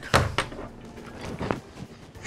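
Hands and arms knocking on a tabletop amid laughter: two sharp knocks at the start and another about a second and a half in.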